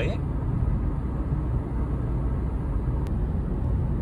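Road noise heard inside a moving car: a steady low rumble of engine and tyres, with a faint click about three seconds in.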